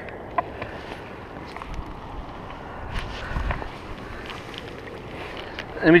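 Shallow lake water sloshing and lapping among shoreline rocks, steady, with a few faint small clicks.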